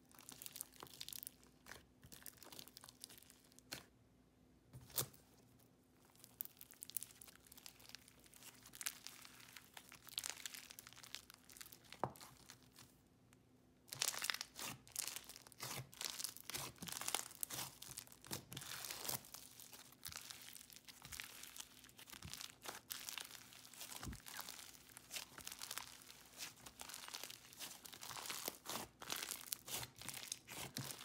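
Crunchy butter slushie slime full of tiny beads being squished, pressed and stretched by hand: a fast, irregular crackling of small pops and crunches, sparser at first and denser and louder from about halfway.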